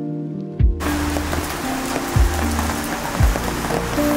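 Steady hiss of rain that starts abruptly about a second in and cuts off just at the end, over soft background music with a few deep low pulses.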